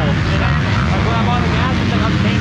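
A 250 dirt bike engine idling steadily, with voices talking over it.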